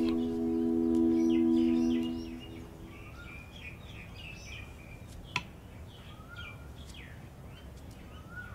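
A struck metal bell rings on with a few steady tones and fades out over the first two and a half seconds. Faint bird chirps follow, with a single sharp tick about five seconds in.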